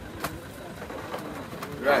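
A dove cooing during a lull in the men's voices, with a short knock about a quarter of a second in and a man's "Right" near the end.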